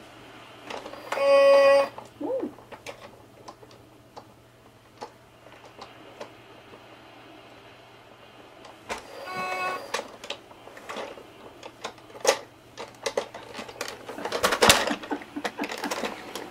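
A baby's electronic musical toy giving a short electronic tone about a second in and a fainter one about nine seconds in, amid small clicks of its plastic buttons and parts being handled, with a louder clatter near the end.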